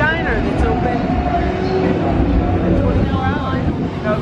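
City street noise: a steady low traffic rumble, with a few snatches of people talking nearby.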